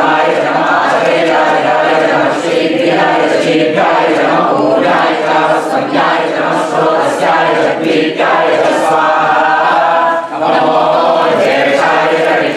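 A group of men and women chanting Sanskrit mantras together in unison, in a continuous recitation for a Hindu homam fire ritual.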